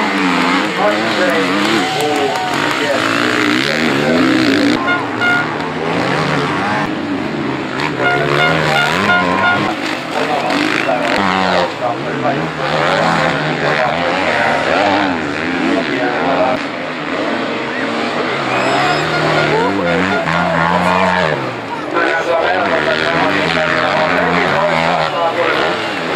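Enduro motorcycle engines revving hard, their pitch rising and falling continually with the throttle.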